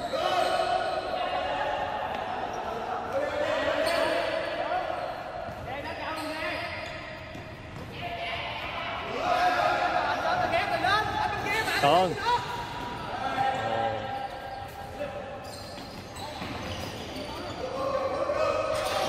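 A futsal ball being kicked and bouncing on a hard indoor court, with shoes squeaking in quick chirps on the wooden floor, sharpest about twelve seconds in. It all echoes around a large sports hall, mixed with players' shouts.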